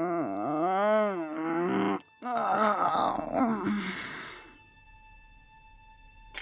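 A person's drawn-out wordless groan, its pitch dipping, rising and falling, then after a brief break a second strained, wailing cry. Faint held music tones follow near the end.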